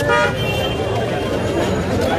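A vehicle horn gives a short honk at the start, over the steady shouting and talk of a jostling crowd.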